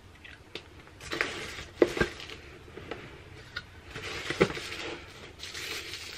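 Cardboard advent calendar box being handled and opened: rustling and scraping of card and paper, with several sharp clicks and knocks, the loudest about two seconds in.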